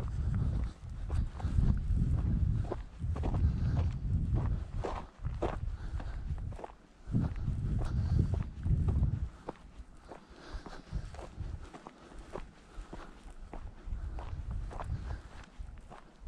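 Footsteps of a person walking at a steady pace across dry, rutted ploughed-field soil, each step a short crunch. A low rumble comes and goes under the steps.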